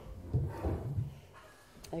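A low voice murmuring indistinctly, with a sharp click near the end.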